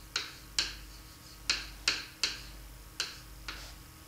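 A stylus clicking and tapping on the glass face of an interactive whiteboard as a word is handwritten on it: about seven sharp, unevenly spaced clicks.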